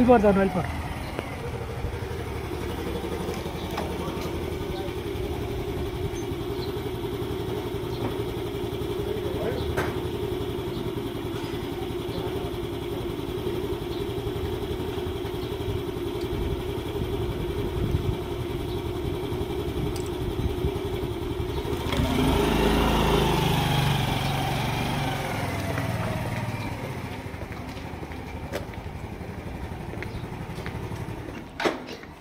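Small motor scooter engine: a falling engine note as it slows at the start, then idling steadily, then revving up as the scooter pulls away about two-thirds of the way through.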